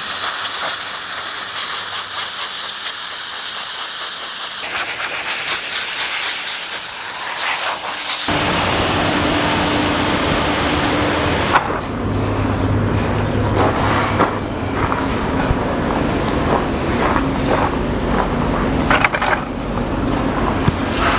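Compressed-air blow gun hissing loudly and steadily for about eight seconds, blasting old sawdust out of beetle holes in a reclaimed wood beam. It cuts off suddenly, giving way to a lower, rumbling background noise with scattered knocks.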